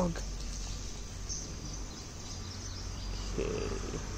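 Quiet outdoor background: a steady low hum with a few faint high bird chirps about a second in, and a brief faint murmur near the end.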